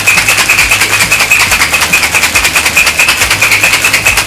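Ice rattling hard inside a metal cocktail shaker being shaken fast, about seven strikes a second, with a steady high ringing tone running underneath.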